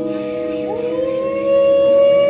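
A woman singing a long wordless note into a microphone, sliding up into it about half a second in and then holding it steady, over a steady lower backing tone.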